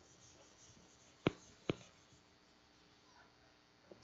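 Chalk on a blackboard: two sharp taps a little under half a second apart, about a second and a half in, against faint room tone.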